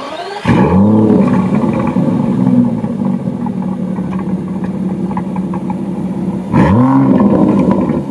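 Aston Martin DB11's 5.2-litre twin-turbo V12 starting up: it catches with a rev flare about half a second in and settles to a steady idle. Near the end comes a single sharp throttle blip that rises and falls.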